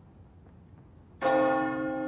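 Near silence, then a single bell-like chime struck a little over a second in, ringing on with a slow fade.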